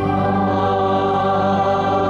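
A choir holding one steady chord, the sung "Amen" that closes the prayer.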